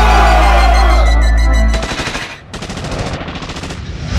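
The hip-hop beat's intro, with deep sustained bass, cuts off about two seconds in. A rapid rattle of machine-gun fire follows as a sound effect in the track, quieter than the beat.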